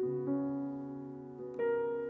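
Grand piano played solo: after a near-silent pause, a chord is struck and left to ring, fading slowly, and new higher notes come in about a second and a half later.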